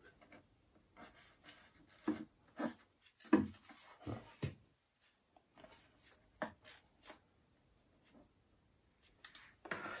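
Faint handling sounds of hands working among cables and parts inside an opened iMac: a few short rubs and clicks, spread out with quiet gaps between them.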